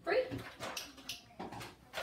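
A dog whimpering: a short whine at the start, followed by several brief noisy sounds.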